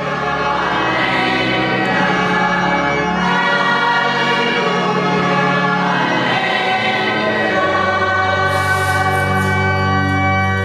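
Choir singing sacred music in long, held chords over sustained bass notes, which shift about three seconds in and again near eight seconds. The sound fades in at the start and then holds at an even, full level.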